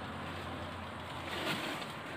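Faint, steady outdoor background noise in the forest, with one brief soft sound about one and a half seconds in.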